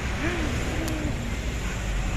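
Road traffic on a busy street: a steady rumble of vehicles running past, with a brief faint voice early in the first second and a single short click about a second in.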